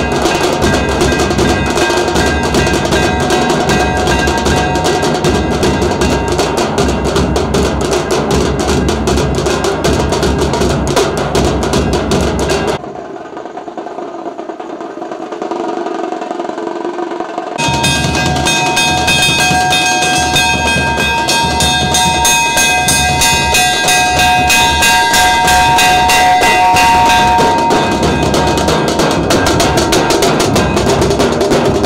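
Loud, drum-heavy music with rapid, steady drumming. About thirteen seconds in it drops for a few seconds to a quieter, muffled stretch, then the drumming comes back with a held melody line over it.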